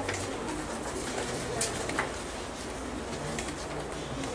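Marker pen writing on a whiteboard in a quiet room: a few short strokes in the first two seconds, over faint low, steady tones.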